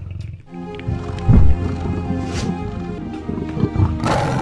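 A big cat's roar laid as a sound effect over music with sustained chords, with a deep boom about a second and a half in.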